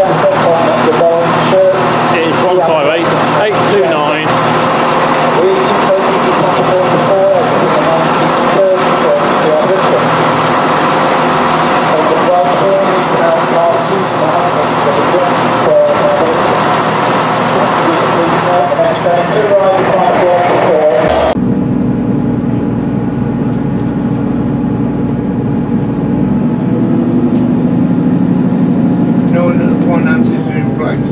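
A diesel passenger train pulling into a station platform, with sharp clicks among its running noise. About two-thirds of the way through, the sound cuts to the inside of a Class 158 diesel multiple unit, its underfloor engine running with a steady hum that shifts in pitch a few seconds later.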